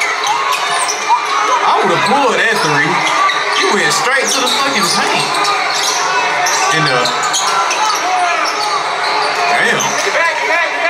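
Game sound from a basketball game in a gymnasium: a ball bouncing on the hardwood court and many short sneaker squeaks, over crowd voices echoing in the hall.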